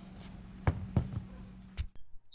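A few light knocks and taps, about three, as small Holley carburetor parts are handled on a cardboard-covered table.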